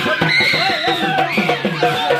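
Music playing loudly with a crowd's voices shouting over it.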